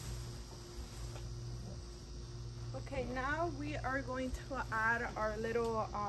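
Quiet, steady outdoor background hum, with a voice talking softly from about three seconds in.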